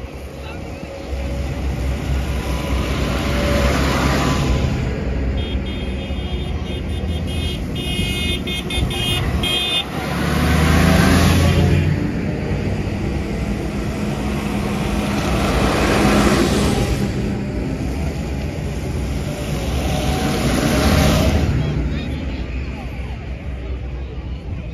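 Large farm tractors driving past one after another on a wet road, each engine and its tyre noise swelling and fading, about four passes in all. A horn sounds in quick repeated toots for about five seconds, a few seconds in.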